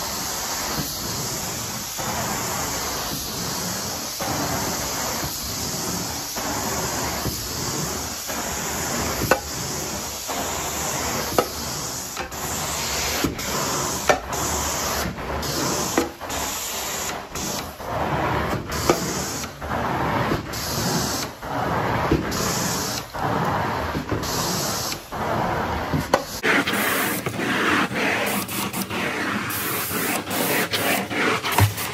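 Carpet-cleaning extraction wand spraying and sucking across carpet, a continuous hiss. In the second half it breaks off briefly about once a second as each stroke ends.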